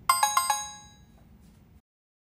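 A short chime sound effect: four quick bell-like notes that ring out and fade within about a second, marking the cut to a quiz question.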